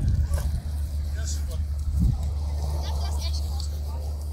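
Faint voices of people scattered along a sandy beach over a steady low rumble, with a short knock about two seconds in.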